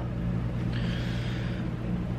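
Steady low room hum, with a soft breath, a sleepy exhale, about a second in.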